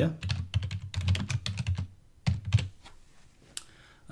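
Computer keyboard typing: a quick run of keystrokes for about two and a half seconds, then a single click near the end.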